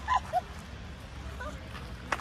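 A small dog gives a few short whimpering yips in the first half second, then only a low steady background noise.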